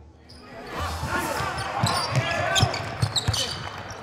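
Basketball bouncing on a hardwood court in an arena, fading in about a second in, with thuds roughly every half second.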